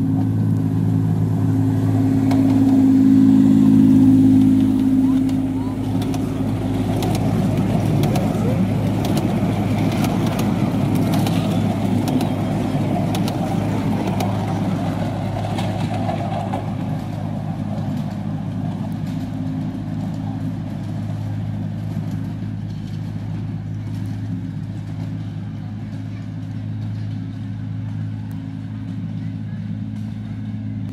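Diesel engine of the Alan Keef miniature railway locomotive "Densil" running at a steady note as it passes close, loudest a few seconds in. The carriages then rumble over the 10¼-inch gauge track, and the sound fades as the train moves away.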